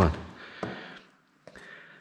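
Faint handling sounds as a red deer's shoulder blade is pulled free of the shoulder meat by hand, with a couple of small clicks.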